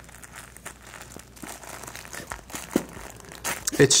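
Great Pyrenees puppy mouthing and nosing a plush slipper toy to get at a treat hidden inside, giving faint crinkling rustles and small scattered clicks.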